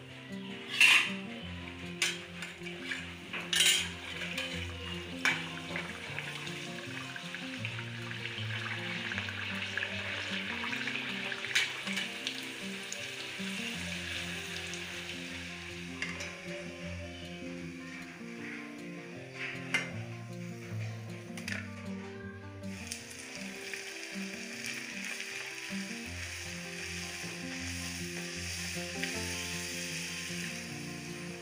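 Puri dough deep-frying in hot oil in a steel kadai: a steady sizzle, with sharp clicks and knocks of a slotted spatula against the pan, most of them in the first few seconds. Background music plays underneath.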